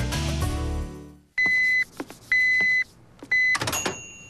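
Commercial music fades out, then three electronic beeps, each about half a second long and about a second apart, the last one cut short.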